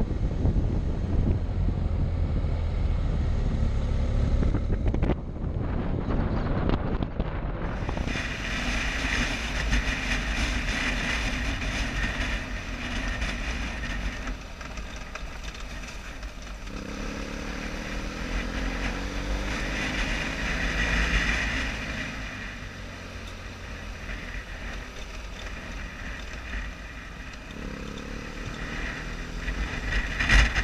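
BMW adventure motorcycle being ridden on a gravel road, its engine running under heavy wind rumble on the helmet camera's microphone. The sound changes abruptly about a quarter of the way in, and later the engine note rises and falls as the throttle is worked.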